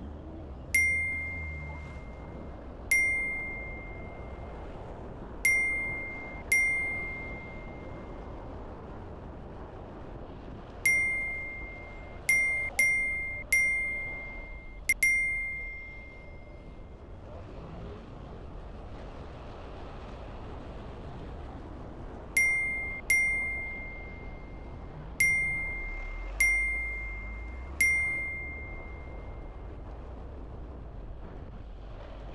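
A bright single-note ding sound effect, sounding fifteen times at uneven intervals, each ding marking the on-screen count of passing vehicles going up by one. Under it runs a steady wash of street traffic noise.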